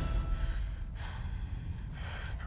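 A person's gasping breath over a faint low rumble, as the trailer music drops away at the start.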